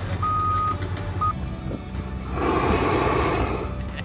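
Backup alarm on heavy equipment beeping, two half-second beeps and a clipped third, over a steady low engine rumble. About two seconds in, a loud rushing hiss lasts about a second.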